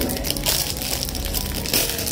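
Thin plastic bread wrapper crinkling and crackling as hands pull it open, with a few louder crackles about half a second in and near the end.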